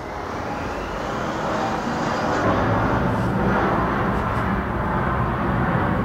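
Loud engine rumble from something large passing by, swelling over the first two to three seconds and then holding steady.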